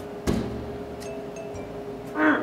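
Glass-fronted drink vending machine humming steadily, with one sharp knock about a quarter second in as a hand works at its glass front, and a few faint clicks after.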